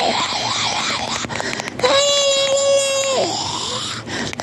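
A person's voice wailing: a wavering, undulating cry, then about two seconds in a long, high, steady wail that breaks and slides down in pitch.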